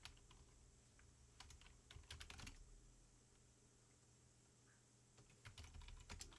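Faint computer keyboard typing: scattered keystrokes in a few short runs, with a quiet pause in the middle before a last few keys near the end.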